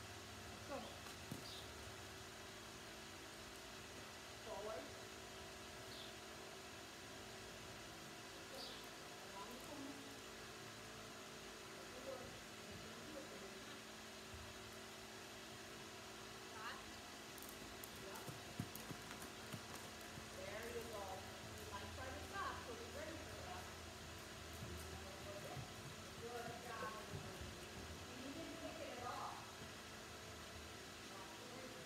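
Faint hoofbeats of a horse moving on sand footing, with distant indistinct voices that grow busier in the last third.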